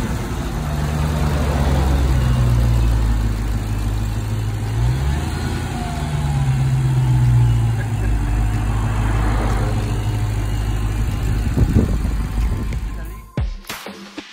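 Supercharged Dodge Challenger SRT V8 running in place, its pitch rising and falling a few times as it is revved, with a sudden cut near the end.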